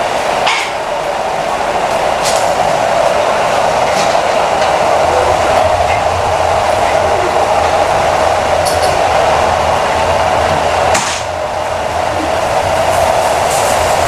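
A steady whooshing machine noise, like a ventilation fan running, with a low hum that joins about five seconds in and a few light clicks.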